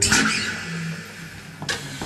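A Yamaha Compass acoustic guitar's ringing chord is cut off with a thump, followed by rustling and bumping from the camera being handled, with a sharp knock near the end.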